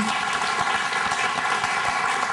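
Studio audience applauding, a steady clapping of many hands.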